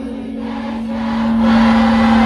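Sholawat music with no drumming: one long note is held steady while group voices swell louder behind it.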